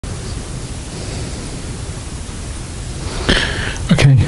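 Steady hiss of background recording noise. Just before the end, a short breathy sound and the start of a man's voice cut in.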